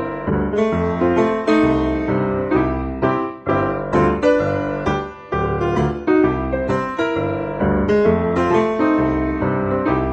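Piano music: a melody of quickly struck notes over a bass line, played at a steady pace.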